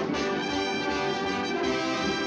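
Orchestral cartoon score led by brass, trombones and trumpets playing held notes.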